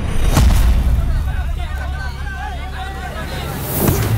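A bare foot kicks a football hard, a sharp thud with a whoosh about a third of a second in. Then several voices shout over a low steady drone of film score, and a second whoosh comes near the end.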